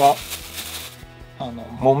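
Rice-husk compost poured from a plastic bag into a bowl: a dry rustling and crinkling of bag and husks that stops about a second in.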